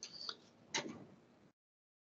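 A quiet pause in room sound: a faint voice trails off, a single soft click sounds about three-quarters of a second in, and then the audio drops out to dead silence.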